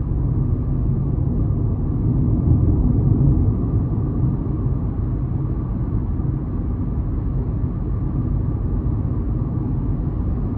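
Steady low rumble of road and engine noise heard from inside the cabin of a 2021 Kia Rio LX with a 1.6-litre non-turbo four-cylinder, cruising along a road. It swells a little about two to three seconds in.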